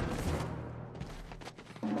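Action-film soundtrack: a deep boom that fades away over about a second and a half, then a short lull. A loud, held, pitched sound breaks in near the end.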